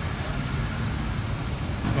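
Steady low rumble of vehicle engines and road traffic, with no distinct events.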